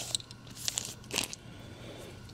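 Plastic comic-book bags crinkling as bagged comics are handled and flipped one by one: three short rustles about half a second apart.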